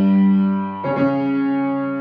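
Grand piano: a loud full chord ringing, then a second chord struck a little under a second in and left to sustain.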